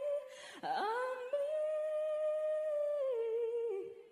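A female singer's voice holding a long wordless note, hummed or sung on a vowel: a breath, then an upward swoop into the note about half a second in, held steady and stepping down near the end.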